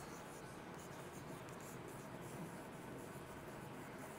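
Chalk faintly scratching and tapping on a blackboard as a word is written out by hand, in short irregular strokes.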